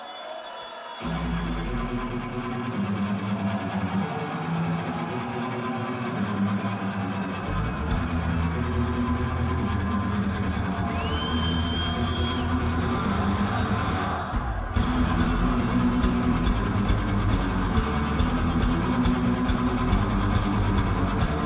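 Live heavy rock band opening a song: a low repeating riff starts about a second in, drums and cymbals come in with the full band around seven seconds later, and after a short break near the end the band plays on louder.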